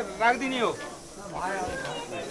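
Indistinct voices of people talking close by, with a faint hiss in a short lull about halfway through.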